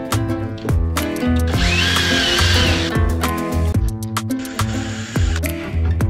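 Background music with a steady beat. Over it, about a second and a half in, a cordless drill runs for just over a second with a whine that rises and then falls away. A second, fainter run comes near the end, fitting the drill driving screws to attach parts to a wooden telescope mount.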